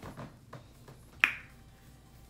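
A single sharp click a little past the middle, with a short ring after it and a few faint taps of handling around it.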